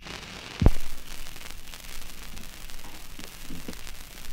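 Turntable stylus set down on a spinning 78 rpm shellac record: a single thump about half a second in, then the steady hiss and crackle of the record's surface noise in the run-in groove before the music starts.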